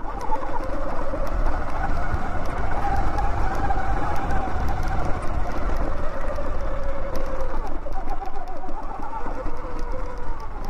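Electric off-road motorbike's motor whining while riding over rough ground, its pitch drifting up and down with throttle and speed, over a low rumble of tyres and wind.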